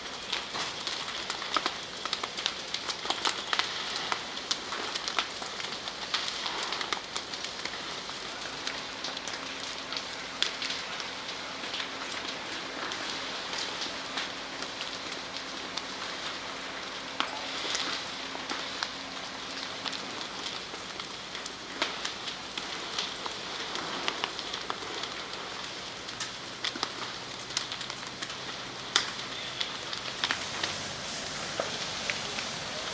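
A large building fire crackling steadily, with frequent sharp pops and snaps of burning timber.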